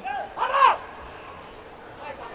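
A short, faint shout from a man on the pitch about half a second in, then a low, steady hiss of open-air stadium ambience with faint distant voices.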